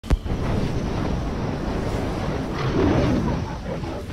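Intro sound effect for an animated logo: a sharp click, then a steady rushing noise like wind or surf that swells a little under three seconds in.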